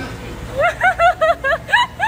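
Wild boar squealing while held down and tied: a quick run of about eight short, high calls, several sweeping upward in pitch, starting about half a second in.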